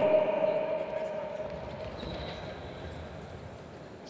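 Handball players' bodies and shoes thudding and shuffling on a wooden sports-hall floor as they roll and jump over one another, with the hall's echo of a shouted command fading out in the first second or two.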